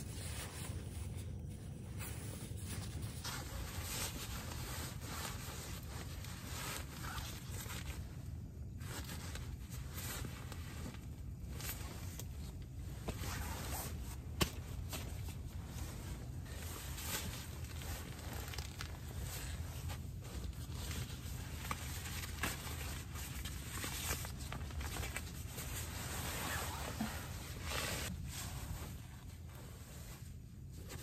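Nylon stuff sacks and down-filled gear rustling and crinkling as they are handled and packed, in irregular short scrapes and swishes. A steady low rumble runs underneath.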